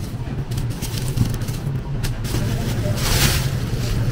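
Red onions being handled and a thin plastic produce bag crinkling, with a louder rustle of the bag about three seconds in, over a steady low background hum.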